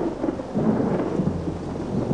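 A loud, deep rumble, rolling and uneven, with a hiss above it.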